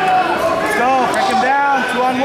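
Indistinct voices of several people talking and calling out in a gym, overlapping, with no clear words.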